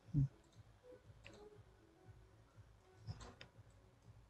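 A few faint computer mouse clicks, about two seconds apart, over quiet room tone.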